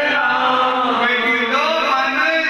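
A man's voice chanting a devotional dhuni in long, held notes that glide slowly up and down in pitch.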